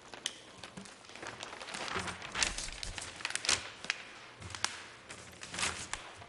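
Large paper plan sheets rustling and crinkling as they are flipped and handled, in irregular crackling swishes that are busiest from about two to four seconds in.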